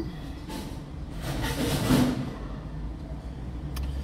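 Street traffic heard from inside a parked car's cabin: a passing vehicle's noise swells and fades around the middle, over a steady low rumble.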